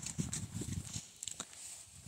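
A few faint, irregular taps and knocks over a low hiss.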